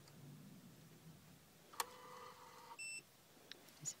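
Fujikura 70S fusion splicer: a click, then an electronic beep about a second long followed by a short, higher beep, as the splice-protector heater is loaded and starts its heat-shrink cycle.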